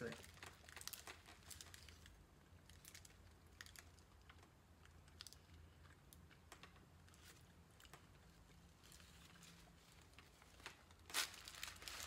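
Faint crinkling of a paper burger wrapper and soft chewing as a burger is bitten into and eaten, heard as scattered small clicks and rustles.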